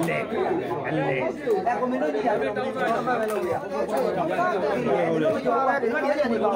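Overlapping chatter of several people talking at once, with no single voice clear.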